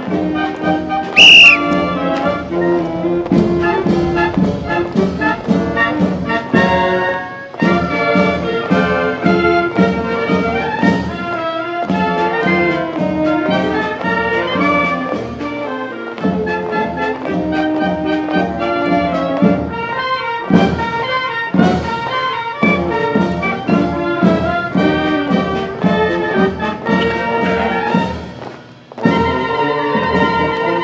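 Town marching band playing, with brass, clarinets and a steady drum beat. A short, shrill whistle blast sounds about a second in, louder than the band.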